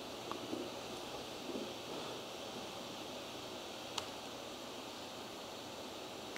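Low, steady hiss of room tone, with a single faint click about four seconds in.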